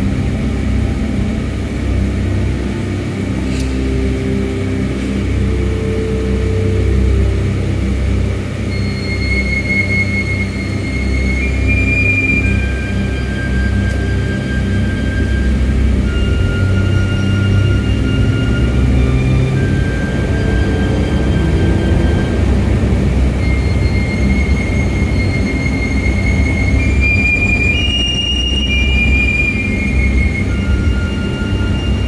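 Steady low rumble of a car driving, heard from inside the cabin, with long high tones at changing pitches sounding over it one after another.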